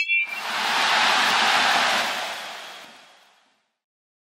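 Stadium crowd noise, an even hiss of cheering and applause with no voices standing out, fading out to nothing by about three and a half seconds in.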